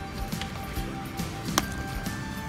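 Clear plastic tubing being handled and pulled off the inlet nozzle of a small plastic automatic plant-watering pump, with one sharp click about one and a half seconds in, over soft background music.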